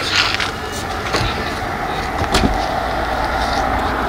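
Police patrol car running with a steady hum, and a couple of short knocks as its open door is handled.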